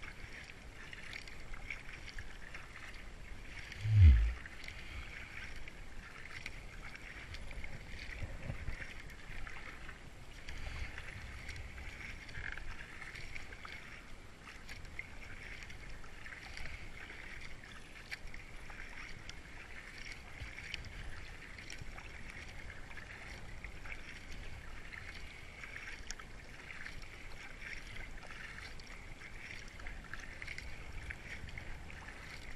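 Kayak paddling on moving river water, heard through a helmet-mounted GoPro: a steady rush of water and paddle strokes, with one loud low thump about four seconds in.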